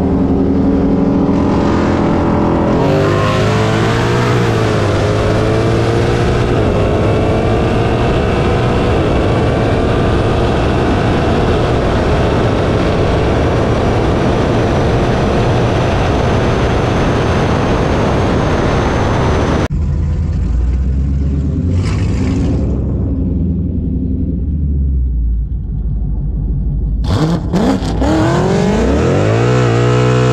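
V8 car engine at full throttle in a roll race, pulling hard for about 17 seconds with its pitch climbing. It cuts off abruptly when the throttle is lifted, then runs lower while the car slows down from high speed, with a few short revs near the end.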